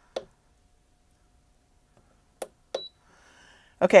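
A few soft clicks from the HTVront Auto Tumbler Press control panel as its temperature button is tapped, with one short high beep near the end as the press enters temperature-setting mode.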